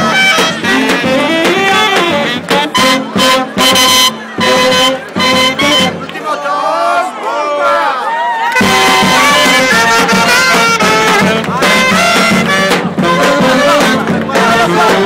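A street brass band with saxophones and a tambourine playing loud, lively music in a crowd. About two-thirds through, the low instruments drop out for a couple of seconds, leaving wavering, sliding high notes, then the full band comes back in together.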